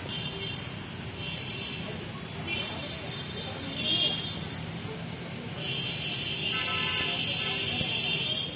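Outdoor background with a steady low rumble and a series of short, high-pitched tones, the fourth and loudest about four seconds in. A longer high tone starts just before six seconds, with a second, lower one under it for a while.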